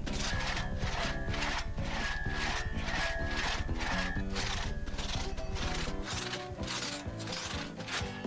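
Background music with a rhythmic rasp, about two or three strokes a second, from a two-man crosscut saw being pulled back and forth through a log in a sawing race.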